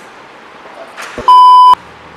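A loud, steady, high-pitched bleep tone, added in editing, lasting about half a second and starting around a second and a half in. It marks a flubbed take.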